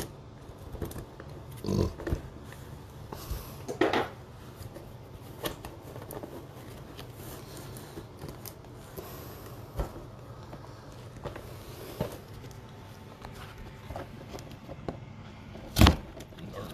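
A cardboard mailer box being handled and pried at, with scattered scrapes, taps and short knocks and a sharp knock near the end.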